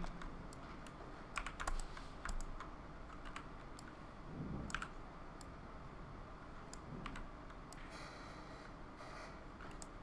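Sparse, irregular clicks of a computer keyboard and mouse being worked, faint and spaced out rather than continuous typing.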